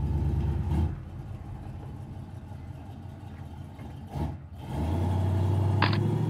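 A car engine running at idle, a steady low rumble that gets louder again about five seconds in, with a sharp click near the end.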